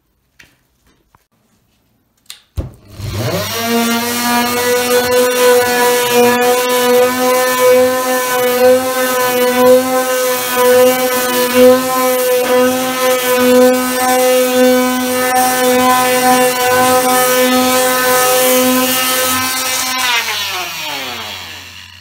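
Renovator oscillating multi-tool with a triangular sanding pad, switched on about two and a half seconds in and running with a steady pitched buzz while sanding leftover paint and wood off a door. It is switched off near the end and its pitch falls as it winds down.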